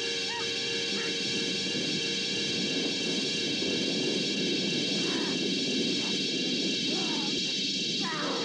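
Old horror-film soundtrack: tense music under a struggle, with a few short falling cries from about five seconds in.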